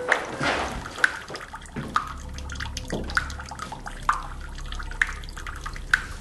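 Water dripping and trickling in a small tiled room, with sharp separate drips about once a second.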